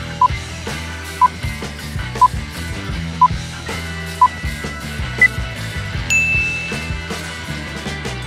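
Quiz countdown-timer beeps over background music: a short beep once a second, five at one pitch and a sixth at a higher pitch. A longer, higher tone follows about six seconds in, marking time up.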